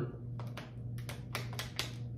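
A rubber balloon being stretched over the mouth of a plastic water bottle: a run of about six small, sharp clicks and crackles from the rubber and plastic as it is worked on.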